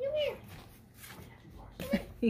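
A small dog whining: a high, drawn-out whine that wavers up and down and breaks off with a brief rise and fall just after the start.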